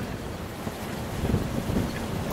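Strong storm wind buffeting the microphone over the steady wash of rough seas around a small sailboat hove to.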